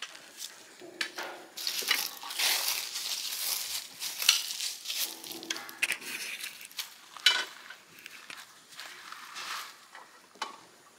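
Footsteps crunching through dry leaves and grass, an irregular crackle with a few sharp clicks.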